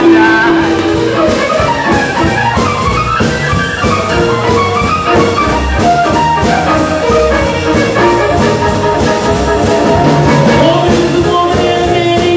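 A live band playing jazz/R&B: drum kit, bass, keyboard and guitar under a melodic lead line, likely the band's saxophone.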